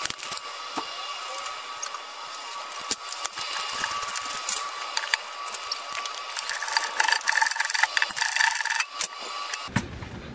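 Hand ratchet clicking rapidly as the bell-housing-to-oil-pan bolt is backed out, the clicking heavier in bursts near the end.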